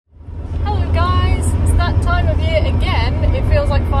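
Steady low road and engine rumble inside a moving van's cabin, fading up at the start, under a woman talking.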